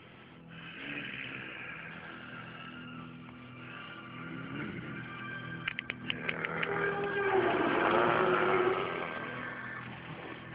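Film score holding sustained tones. About halfway through comes a quick run of sharp cracks, knuckles cracked as a fist is clenched. It is followed by a louder swell that rises and falls near the end.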